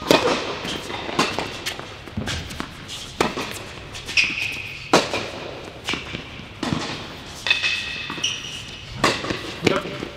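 Tennis rally on an indoor hard court: a serve, then racket strikes on the ball and ball bounces trading back and forth about once a second, echoing in the hall. A few short high squeaks come between the strikes.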